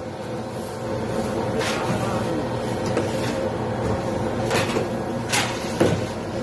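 Steady low machine hum of a commercial kitchen, with a few short knocks and clatters from work at the counter.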